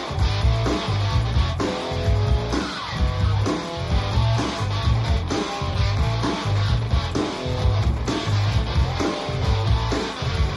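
A band playing a studio session track: electric guitar and bass guitar over drums, the bass repeating a short figure throughout.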